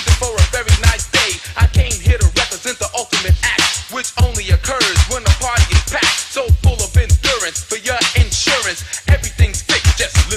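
Hip hop track from a DJ mixtape: a rapper's vocals over a beat with repeated heavy bass hits.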